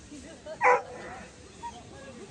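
A dog barks once, a single short loud bark about two-thirds of a second in, from an agility dog on the course.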